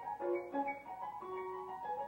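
Solo concert grand piano playing classical repertoire: a quick succession of clear, ringing notes in the middle register, several sounding together.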